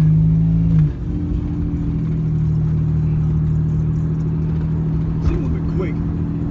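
Buick Grand National's turbocharged V6 running while the car is driven, heard from inside the cabin as a steady drone. The sound drops suddenly in loudness about a second in, then holds steady.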